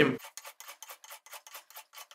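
Old hand plane scraping along an oak axe handle in quick, short strokes, about five a second. Its blade is set very shallow, so each stroke takes off only a thin shaving.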